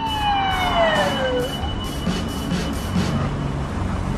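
Police car siren sliding down in pitch and dying away about a second and a half in, leaving a low steady background.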